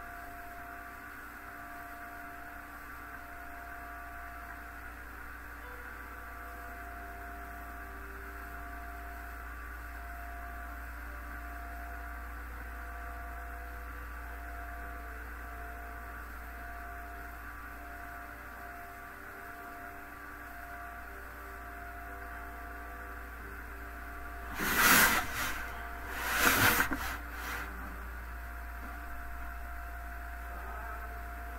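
Steady electrical hum with a few faint steady tones. Near the end come two loud, brief bursts of noise about a second and a half apart.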